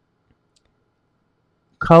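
Near silence with a faint computer mouse click, then a man starts speaking near the end.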